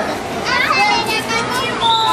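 Children's high voices shouting and chattering over a background babble of a group at play.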